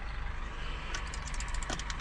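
Scania S500 truck engine idling with a low steady hum, heard from inside the cab. A quick run of light clicks comes about a second in.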